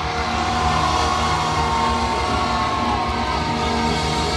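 Steady ringing drone of guitar amplifiers left sounding on stage after a rock song ends, several held tones with one drifting slowly, over a haze of crowd noise.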